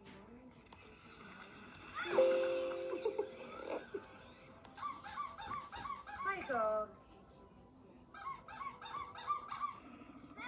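Audio of funny video clips playing back through a speaker: voices and music, with two runs of rapid, high-pitched repeated sounds, about three a second, in the second half.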